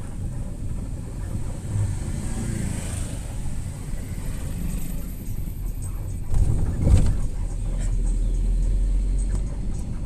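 Cabin noise inside a moving passenger vehicle: a steady low engine and road rumble, with a thump about seven seconds in.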